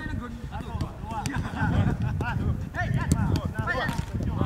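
Players calling out in short shouts during a football passing drill, with a few sharp knocks of the ball being kicked.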